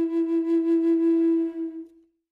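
Native American flute holding one long note, its loudness pulsing slightly, then fading out near the end.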